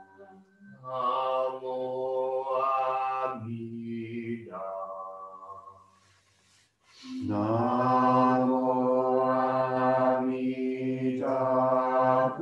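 Buddhist chanting by a small group of voices in long held notes, with a break for breath about six seconds in before the chant starts again.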